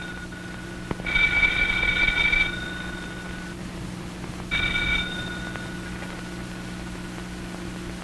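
Telephone bell ringing: a ring about a second in, then a second, shorter ring a few seconds later that stops as the receiver is picked up. A steady low hum runs underneath.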